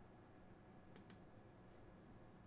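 Two quick computer mouse clicks about a second in, over near-silent room tone.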